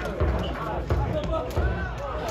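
Football players shouting to each other on the pitch during play, with a few dull thuds of the ball being kicked.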